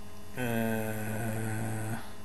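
A man's voice holds one steady, drawn-out hum-like vowel, a hesitation filler, for about a second and a half, starting about half a second in. A constant electrical mains hum lies underneath.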